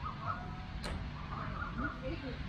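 Quiet outdoor background with faint short chirps and one brief sharp click just under a second in.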